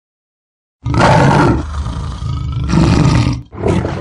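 A big cat roaring. The roar starts suddenly about a second in, swells again near three seconds and ends with a shorter growl.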